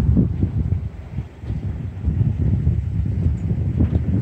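Wind buffeting the microphone: an uneven low rumble that eases briefly about a second in.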